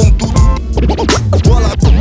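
Hip-hop beat with DJ turntable scratching, quick back-and-forth pitch sweeps over a deep bass line.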